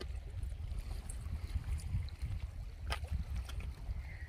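Wind buffeting the phone's microphone: a gusty low rumble, with a single sharp click about three seconds in.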